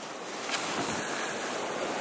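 Strong wind, 35 to 50 mph, blowing across the microphone as a steady rush, a little louder about half a second in.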